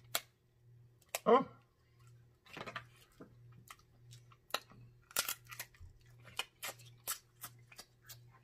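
Snow crab leg shell being snapped and picked apart by hand, with irregular sharp cracks and clicks coming thicker in the second half, mixed with close-up chewing and mouth smacking.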